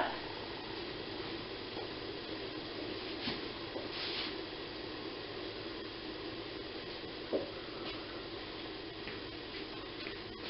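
Faint steady hiss of a covered pot of boiling water steaming dumplings on an induction hob, with one soft tap about seven seconds in.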